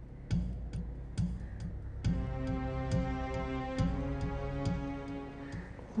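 Dramatic background score: a steady ticking beat, a little over two ticks a second, with low bass pulses on each tick. About two seconds in, a sustained synthesized chord comes in and holds, fading near the end.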